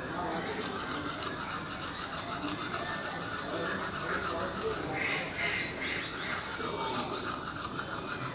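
Toothbrush scrubbing back and forth over teeth in quick repeated strokes, a wet rasping rub, with birds chirping in the background.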